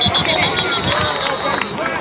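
A referee's whistle blowing one long, steady, high blast to end a football play, over the chatter of nearby spectators.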